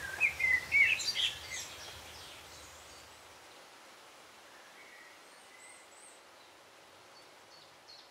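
Songbirds chirping in short gliding calls during the first second and a half, over faint outdoor background noise that fades out toward the end, with a few faint high chirps later.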